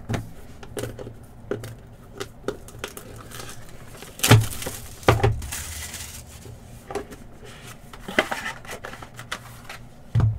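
A 2022 Leaf Valiant Football hobby box being handled on a tabletop and opened. A solid thump about four seconds in as the box is set down, then about two seconds of crinkling and tearing as it is unwrapped, with lighter taps and rustles of cardboard and card holders around it.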